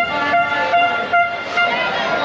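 A horn sounding in a run of short repeated blasts, about two a second, over busy street noise.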